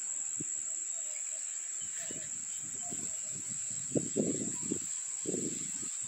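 A steady, high-pitched insect drone goes on without a break. From about two seconds in it is joined by irregular low rustles and thuds, as of someone walking through vegetation.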